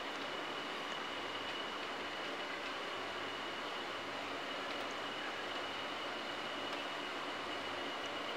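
Steady background hiss with a faint, constant high-pitched whine running through it.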